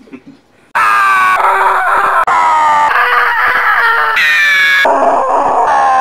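A loud edited run of drawn-out cries spliced one after another, starting about a second in. Each is cut off abruptly and replaced by the next every half second to a second or so.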